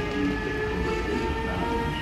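DB class 146 (Bombardier TRAXX P160 AC2) electric locomotive pulling away with a double-deck train: its traction equipment gives several steady whining tones that edge slowly up in pitch as it gathers speed, over a low rolling rumble.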